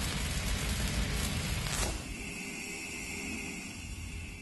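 Sound-effect tail of an intro logo sting: a noisy crackle over a low rumble left from an impact hit, a quick falling swoosh near the middle, then a steady high ringing tone that fades toward the end.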